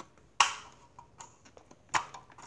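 Plastic clicks from a Yejen Trendsetter electric stapler's staple-carrier release being worked: one sharp click about half a second in, a few faint ticks, and another sharp click near the end.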